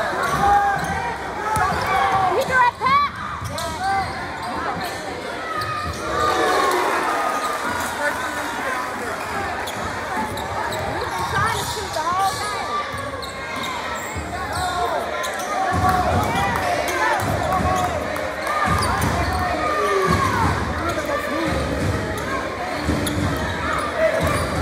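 Basketball dribbled on a hardwood gym floor, the thuds repeating most steadily in the second half. Players and spectators call out, with the gym's echo behind them.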